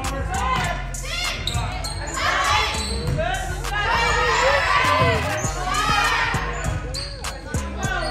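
Volleyball rally in a gym hall: the ball being struck and landing in short knocks, amid players' voices calling out over a steady low hum.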